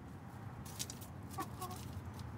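Backyard hens clucking, with two short low clucks about one and a half seconds in, among brief scratchy rustles as they forage.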